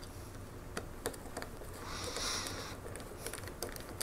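Small clicks and light tapping of tiny screws, a small screwdriver and plastic model parts being handled as self-tapping screws are driven into plastic brackets, with a short scratchy hiss about two seconds in.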